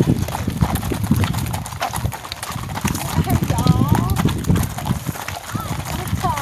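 Hooves of several horses walking on a gravel road, a steady, overlapping jumble of clip-clops.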